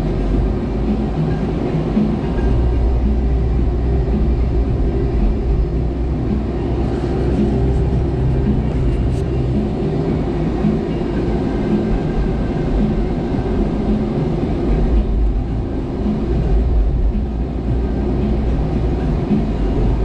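A Jeep driving along a city street, heard from inside the cabin: a steady rumble of engine, tyres and road.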